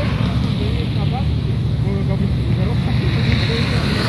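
Steady wind noise on the microphone mixed with passing street traffic, with faint voices in the background.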